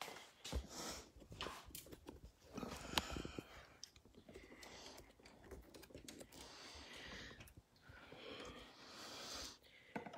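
Faint, scattered small clicks and handling rattles as a presser foot with an edge guide is being changed on a sewing machine; one sharper click about three seconds in.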